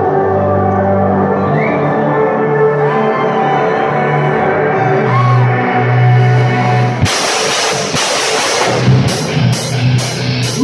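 Live rock band starting a song: held, droning notes open it, then about seven seconds in the full band crashes in with drums and cymbals, settling into a steady, heavy drum beat near the end.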